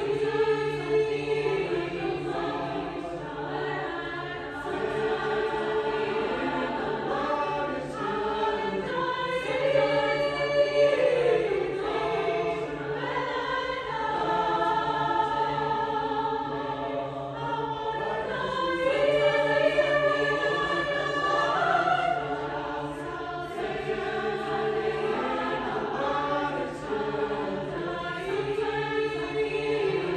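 Mixed-voice choir singing sustained, flowing lines, swelling louder twice, about a third and two thirds of the way through.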